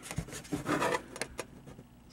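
Handling noise: light rubbing and a few soft clicks, mostly in the first second, then quieter.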